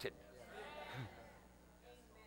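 A faint voice in a quiet hall: one brief call, rising and then falling in pitch, from about half a second in to just past one second.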